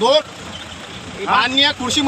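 Men's raised voices, shouting, inside a vehicle: a short burst at the start and another loud stretch from a little past halfway, with a steady vehicle engine hum in the pause between.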